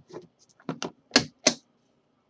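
Metal clasps of an aluminium briefcase being worked open: several small clicks, then two loud snaps a third of a second apart.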